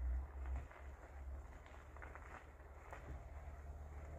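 Faint low rumble of a car arriving, with a few soft footsteps on snow.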